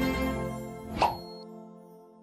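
Outro music for an end-card animation fading out, with one short, sharp sound effect about a second in that is the loudest moment before the music dies away.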